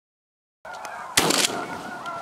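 Silence, then about two-thirds of a second in the outdoor sound fades up and a single shotgun shot goes off a little past a second in, ringing out briefly.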